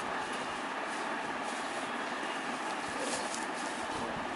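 Steady background noise, an even hiss with no clear source, with a few faint light ticks about three seconds in.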